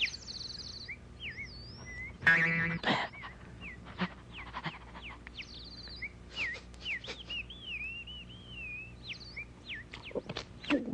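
Bird-like whistled chirps and gliding, wavering whistles repeating throughout, with a louder buzzing burst a little over two seconds in.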